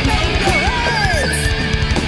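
Heavy/power metal band recording with drums and distorted guitars, with a high lead note that bends up, then slides down about an octave and holds.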